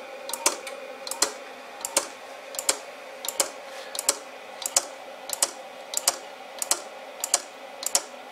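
Micro switch of a homemade pulse motor clicking in an even rhythm, about once every two-thirds of a second and sometimes doubled, as the magnets on the glass turntable flywheel pass it. A faint steady hum lies underneath.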